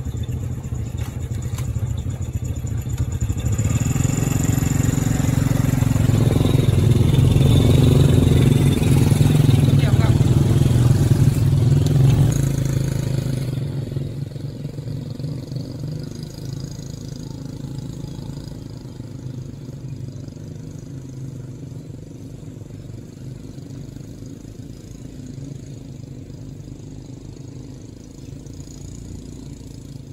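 Several small motorcycle engines running close by. They grow louder as the bikes pull away, then fade steadily as they ride off down the track.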